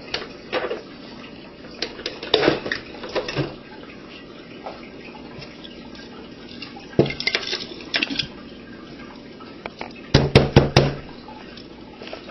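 Glass blender jar clinking and knocking as it is handled and upended over a paper napkin, the broken plastic pieces of a blended Game Boy Advance cartridge falling out. A quick run of loud knocks comes about ten seconds in.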